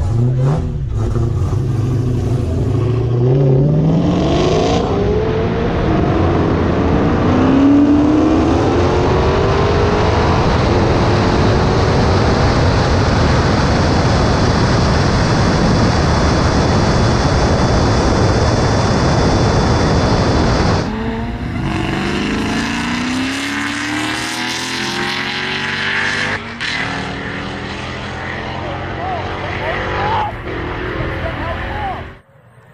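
A modified supercharged Dodge Challenger Hellcat and a McLaren 720S racing flat out from a roll. The engine notes climb through upshifts at about four and eight seconds in, then give way to loud wind and road rush at high speed. About 21 seconds in the sound drops as the cars lift off and the engines wind down.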